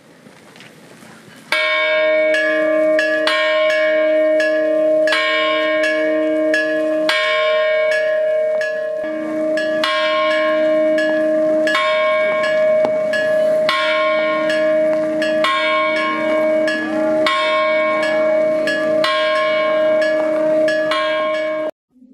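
Church bells tolling for a funeral: several bells struck in a steady, even run, a little more often than once a second, their tones ringing on between strokes. The ringing starts about a second and a half in and cuts off abruptly just before the end.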